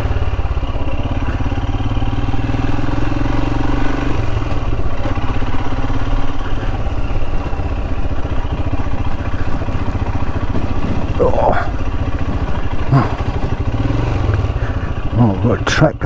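Royal Enfield Himalayan's single-cylinder engine running steadily as the motorcycle is ridden along a rough dirt track.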